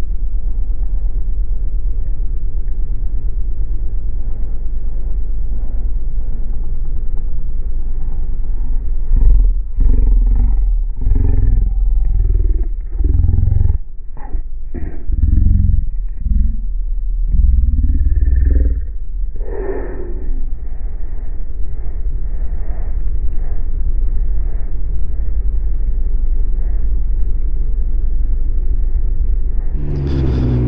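Can-Am Ryker 900 three-wheeled motorcycle riding at low speed, its three-cylinder engine and the wind on the microphone making a steady low rumble. In the middle stretch the rumble grows louder and uneven, with a few sharp knocks.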